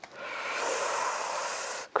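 A man's long, breathy sigh lasting about a second and a half, cut off just before a word.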